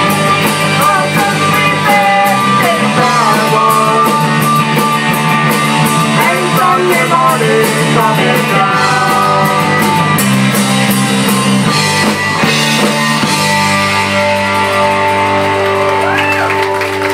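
Live country-rock band playing: electric guitars, bass and drum kit, in the closing stretch of a song.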